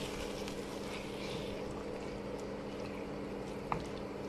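Tomato and tuna sauce simmering in a small pan while a wooden spatula stirs it, with a single light knock of the spatula against the pan near the end. A steady low hum runs underneath.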